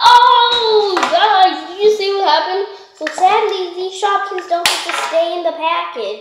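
A young girl's voice, vocalizing without clear words, with a sharp click about four and a half seconds in.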